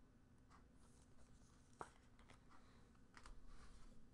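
Near silence: faint room tone with a few soft clicks and light rustling of trading cards being handled, a little louder near the end.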